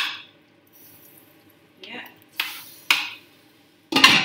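Cooking utensils clinking against a pan: a sharp clink at the start, a short scrape about halfway through, and another sharp clink near the end.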